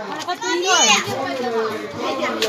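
Children's voices chattering and calling out at once, with one loud, high-pitched child's cry about half a second in.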